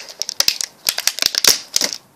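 Thin plastic wrapping crinkling and crackling as it is handled, in quick irregular bursts that stop suddenly at the end.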